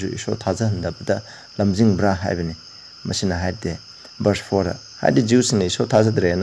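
A man speaking in short phrases with brief pauses, over a steady high-pitched trill that runs on without a break.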